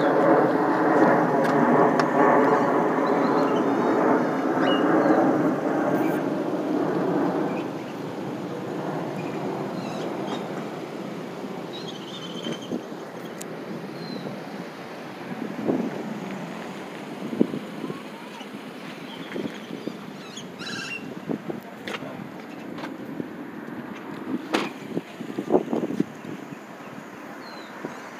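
A vehicle engine running close by, a steady hum that fades away about seven seconds in. After that, street traffic and wind on the microphone, with scattered light knocks.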